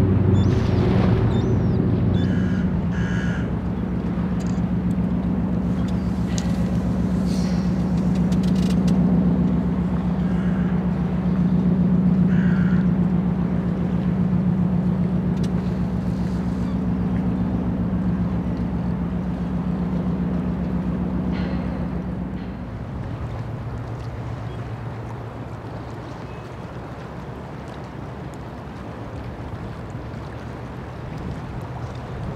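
Ship diesel engines droning steadily, a low pitched hum, from the tugs and the large ro-ro car carrier they are handling; the drone falls away about three quarters of the way through. A few short bird calls sound over it early on.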